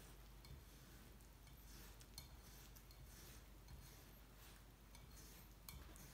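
Faint, scattered taps of a kitchen knife slicing through a cucumber onto a wooden cutting board, a few soft cuts at irregular intervals over an otherwise near-silent room.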